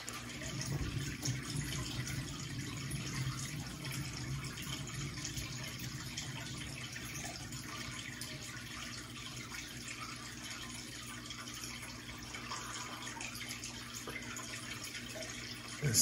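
Steady trickle of water from an aquarium, running throughout. A low rumble from the spinning canvas turntable is heard over the first few seconds.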